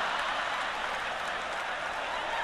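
Large live audience applauding, a dense steady patter that eases off slightly over the two seconds.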